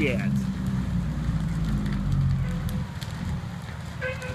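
A large garage-and-house fire burning, fed by propane: a loud low rumble with faint scattered crackles, easing about three seconds in.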